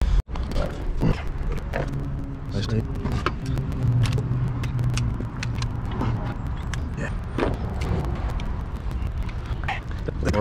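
Clicks, knocks and small rattles of parts and tools being handled while an outboard engine's fuel tank is worked loose, over a steady low hum.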